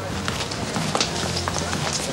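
Café background ambience: a low murmur of background voices over a steady low hum, with scattered short clicks and taps.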